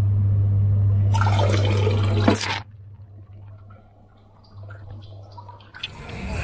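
Bidet attachment on a toilet seat turned on by its dial: water spray hisses for about a second and a half, starting about a second in, over a steady low hum that drops away soon after.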